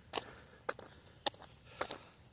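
Footsteps on dry leaf litter: four crunching steps about half a second apart.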